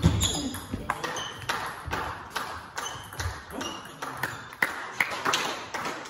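Table tennis ball being hit back and forth in a rally: a string of sharp pings and clicks as the ball strikes the bats and the table, about two a second.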